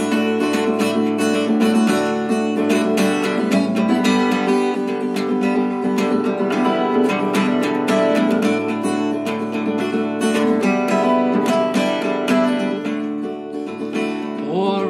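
Strummed acoustic guitar playing steadily, an instrumental passage with no voice.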